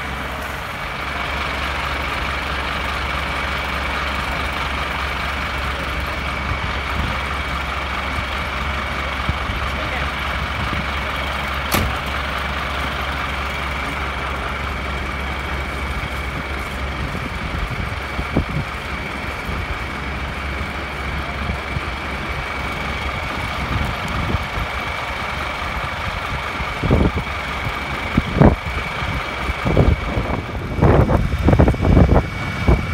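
Scania fire engine's diesel engine running steadily at the scene, with a steady high whine over the engine noise. The low engine rumble fades about halfway through, and a few knocks come near the end.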